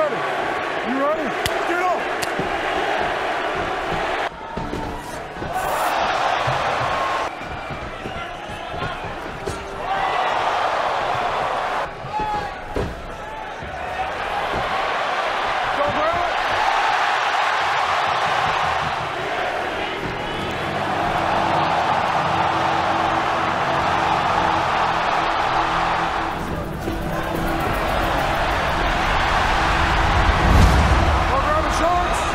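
Arena crowd cheering and shouting, the noise swelling and dipping in waves, with a steady music bed underneath in the second half.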